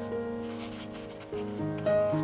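Gentle instrumental background music of sustained notes, the harmony shifting about one and a half seconds in.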